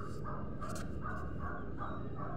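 A bird calling in a rapid run of short, evenly spaced notes, about three to four a second, over a steady low rumble.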